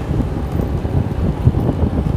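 Wind buffeting the microphone while riding along a road, a loud, uneven low rumble.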